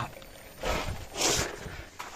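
Two short rustling scuffs of movement, the second, about a second in, louder. No steady pump or engine tone is present.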